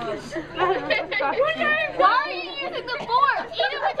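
Several voices talking and exclaiming over one another, with sharp rising-and-falling cries and no clear words.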